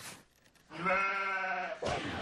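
A goat's bleat: one long, steady "baa" lasting about a second, starting about two-thirds of a second in.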